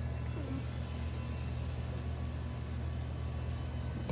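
A steady low mechanical hum fills the room, with no other clear sound.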